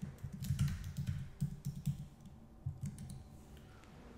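Typing on a computer keyboard: a quick run of keystrokes for about three seconds, then it stops.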